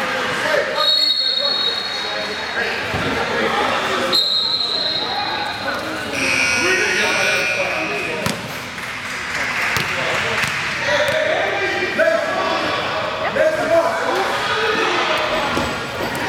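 Indoor basketball game: a ball bouncing on the hardwood court amid voices echoing through the gym. A few brief high-pitched squeals sound about a second in, around four seconds in, and again just after six seconds.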